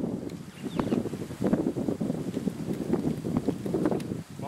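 Wind buffeting the microphone outdoors: a rough, uneven low rumble with crackles.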